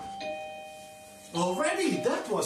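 Two-note ding-dong doorbell chime: a higher note, then a lower one joining it, both ringing steadily until they cut off about one and a half seconds in. A person's voice follows.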